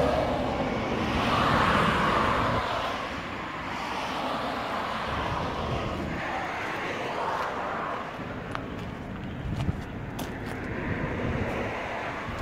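Road traffic passing: vehicles going by one after another, each a swell of tyre and engine noise that rises and fades, the loudest about a second or two in.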